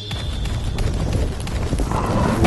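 Cartoon dinosaur sound effects: a quick, irregular run of heavy thuds, over background music.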